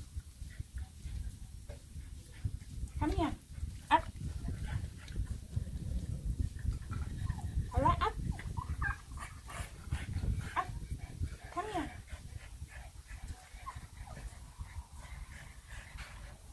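Bulldog puppy giving a few short whines that rise and fall in pitch, over a low rumble, with one sharp click about four seconds in.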